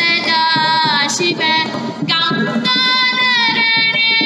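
A woman singing high, long-held melodic notes with small ornaments, over light hand-percussion accompaniment.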